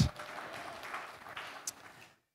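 Congregation applauding, the clapping fading away toward the end.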